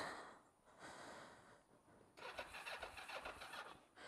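Kawasaki GPZ 500 S starter struggling on a flat battery: a faint, brief, rapid clatter about two seconds in, without the engine firing.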